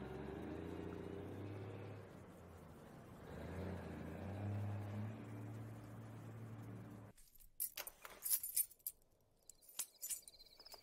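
A low, steady drone for about seven seconds, then it stops, followed by a run of sharp metallic jingles and clicks: keys jangling as a front door is unlocked from outside.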